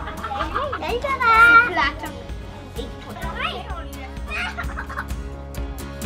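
Children's voices, loudest as one child gives a high-pitched, wavering call about a second in, with background music coming in around the middle.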